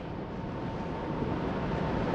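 Steady room noise, a low rumble and hiss with a faint steady tone running through it.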